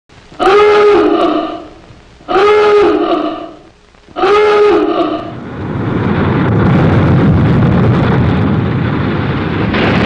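Three blasts of a submarine's diving alarm klaxon, each about a second long with a rising 'ah-oo-gah' swoop, followed by a steady rushing noise.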